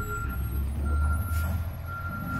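Concrete mixer truck's backup alarm beeping about once a second, each beep about half a second long, over the low rumble of the truck's engine, which swells in the middle. The alarm means the truck is in reverse.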